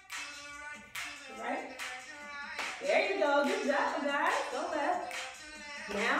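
A line-dance hip-hop song playing, with a sung and rapped vocal over a steady beat of sharp claps, about two a second.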